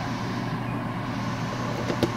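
Steady low hum with an even hiss underneath, kitchen background noise around a stovetop steamer, with a light click near the end.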